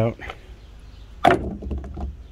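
Small Torx screwdriver backing a tiny T8 screw out of the speedometer motor on a plastic gauge cluster: faint light ticks, then one sharp knock a little over a second in.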